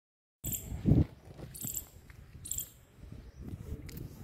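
Insect chirping in short high bursts, about one a second, with low thumps underneath, the loudest about a second in.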